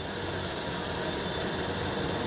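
Steady machine noise: a strong, even hiss over a low hum, as from running machinery.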